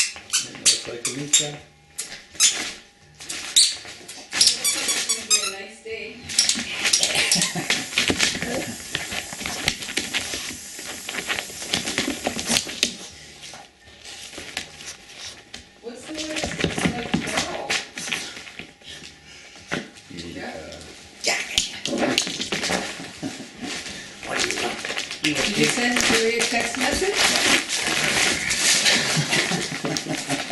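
Christmas wrapping paper crinkling and tearing as a Chihuahua rips and noses through it. The crackling comes in spells, heaviest from about a fifth of the way in and again through the last third.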